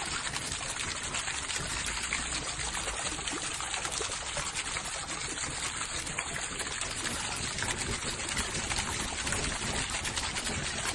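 Water pouring and splashing steadily from a fire-and-water fountain, falling streams of water with flames burning along them.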